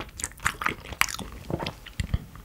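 Close-miked chewing of raw beef sashimi: a quick run of wet, sticky mouth clicks and smacks, with a sharper click about a second in.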